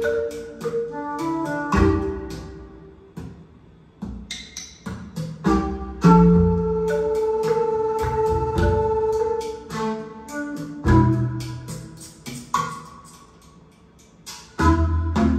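Instrumental music played from a vinyl record through a hi-fi system: struck, ringing notes over held tones, falling quieter twice.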